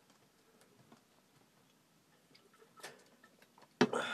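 Quiet room with a few faint clicks, then a sharp click shortly before the end followed by rustling, as a handheld phone being moved.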